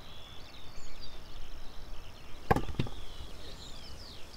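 A peeled fruit is dropped into an enamel bowl of peeled fruit, landing with a knock about two and a half seconds in and a smaller second knock as it settles. Birds chirp faintly in the background.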